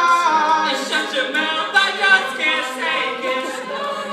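A cappella vocal group singing in harmony, voices only with no instruments.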